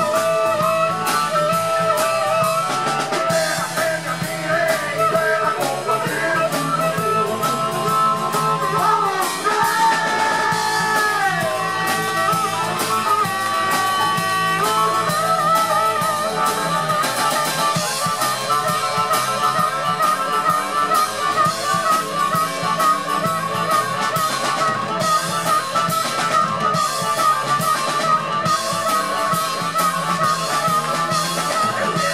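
Live blues-rock band playing: an amplified harmonica, cupped to a handheld microphone, plays long bending notes over electric guitar and a drum kit.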